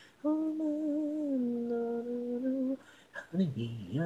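Unaccompanied female vocal holding one long sung note that slides down a little and ends after nearly three seconds. After a short pause the singing starts again near the end.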